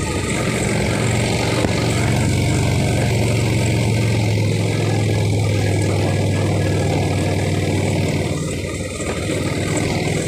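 Motor scooter engine running steadily while riding, under a broad rush of wind over the microphone. The engine note and overall level drop briefly about eight and a half seconds in, then pick up again.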